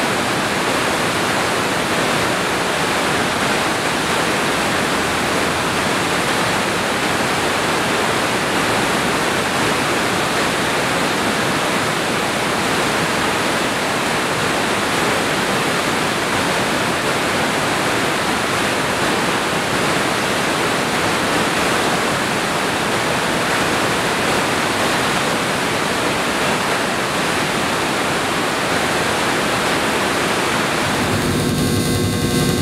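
Steady, unbroken rush of water pouring over a river dam's spillway and down the rapids below.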